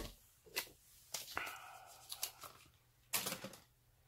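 An eyeshadow palette being taken out of its packaging by hand: a few scattered, faint crinkles, scrapes and taps, the loudest just after three seconds in.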